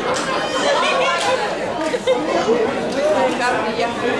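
Several people talking over one another, a steady hubbub of overlapping voices with no single speaker clear: spectator chatter close to the microphone.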